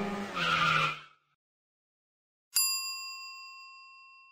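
A gliding, pitched sound fades out about a second in. After a short silence, a single bright chime strikes about two and a half seconds in and rings out slowly, as a logo sting.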